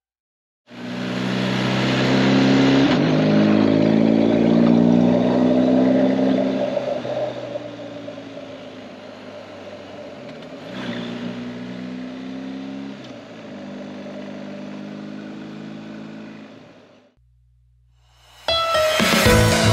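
BMW R1250GS boxer-twin engine heard from the rider's seat, pulling up through the revs, then easing off for several seconds, and picking up again about eleven seconds in, with wind rush over the microphone. The sound cuts off suddenly near the end.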